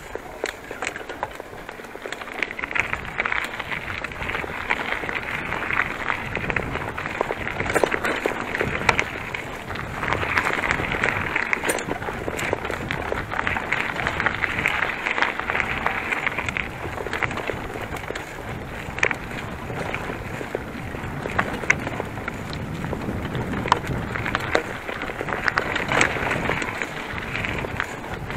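Bicycle riding over a rough, grassy forest track: a steady, uneven rumble of tyres on the ground, with frequent knocks and rattles from the bike over bumps.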